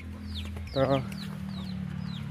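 Chickens calling: a run of short high notes, each falling in pitch, repeating several times a second.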